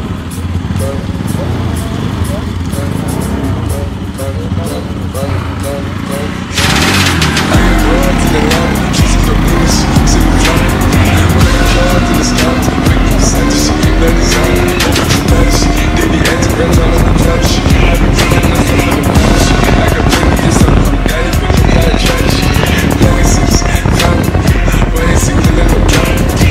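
Music with a beat plays over the single-cylinder engine of a Bajaj Pulsar NS200 motorcycle running on the road, its pitch rising slowly as it gathers speed. The sound turns suddenly louder about six and a half seconds in.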